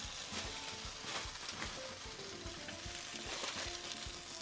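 Breaded eggplant slices in olive oil sizzling quietly in a skillet on low heat, a steady crackle, while aluminium foil crinkles as hands press it down over the pan as a lid.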